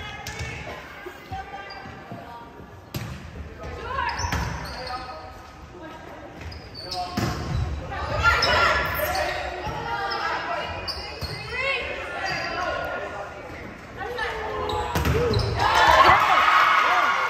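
Volleyball rally in a gymnasium: a few sharp smacks of the ball being hit, amid players calling and shouting, all echoing in the hall. The shouting swells loudly near the end.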